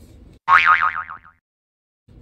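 Cartoon 'boing' sound effect: one springy tone with a fast wobble in pitch, sliding down and dying away within about a second.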